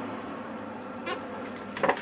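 An instant noodle cup in its plastic wrap being picked up and turned over in the hands, making a short crackle near the end. A steady background hum runs under it.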